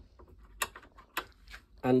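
A small Stanley multi-angle vice being adjusted by hand: light clicks and knocks from its handle and joints, with two sharper clicks about half a second and a second in.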